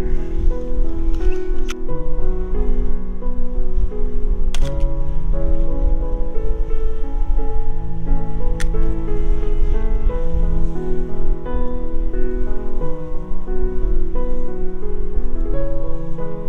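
Background music of slow, sustained keyboard notes, over a steady low rumble of wind on the microphone.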